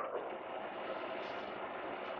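Steady faint background hiss of a quiet room, with no distinct sound event.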